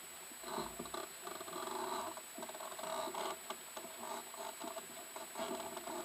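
Small waves lapping and gurgling against a catamaran's hull in irregular bursts.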